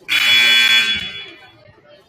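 Gym scoreboard buzzer sounding once, a loud harsh buzz lasting about a second that fades away as it echoes round the gym; during a stopped-clock timeout it is the signal that the timeout is over.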